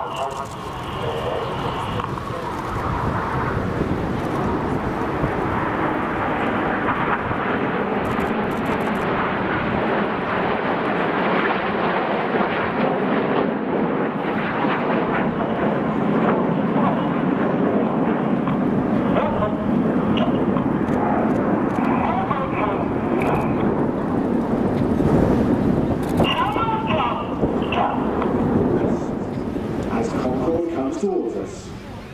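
Jet noise from a formation of BAE Hawk T1 jets with Rolls-Royce Turbomeca Adour turbofans, a steady roar that swells a couple of seconds in and holds, peaking briefly near the end.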